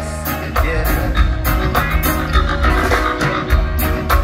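Live reggae band playing loud, with a heavy bass line, drums keeping a steady beat, and electric guitar.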